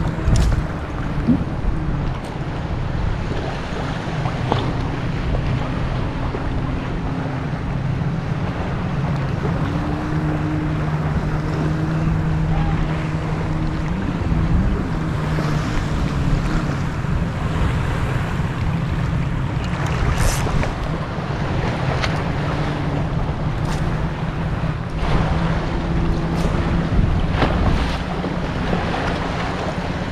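Small sea waves lapping and sloshing around a wading angler's legs, with wind buffeting the microphone. A few brief splashes stand out in the second half, and a faint low hum comes and goes in the background.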